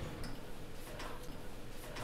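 Faint clicks from a wooden double door's latch and hardware as it is opened, over a low steady room hum.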